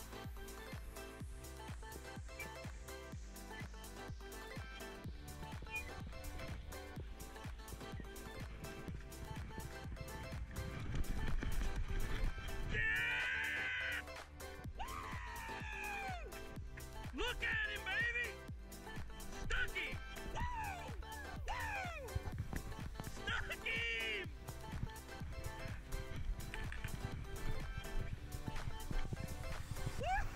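Background music with a steady beat. In the second half, several short, high voice calls rise and fall over it.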